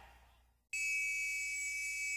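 A gap between songs: dead silence, then, under a second in, a steady high-pitched electrical whine with a low hum, the sound of an amplifier's idle noise before the next song begins.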